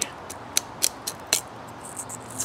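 A few sharp clicks and small cracks of a knife blade against dry wood as the blade is worked into the end of an upright stick to split it, the three loudest at about half a second, just under a second and about a second and a half in.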